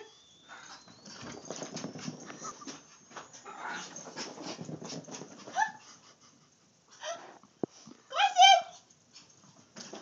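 Dachshund and another dog chasing each other: scrambling noise with short whines, and a burst of high yelps about eight seconds in, the loudest sound.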